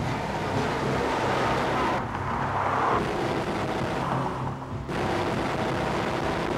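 A large off-road haul truck driving by: its diesel engine running steadily and its big tyres rolling over dusty ground.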